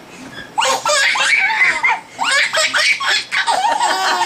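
A four-month-old baby laughing in two bursts, the first starting about half a second in, each a quick run of high-pitched laughs.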